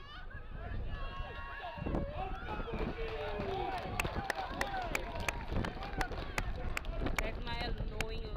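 Several voices shouting and calling over one another on a rugby field, with sharp clicks scattered through.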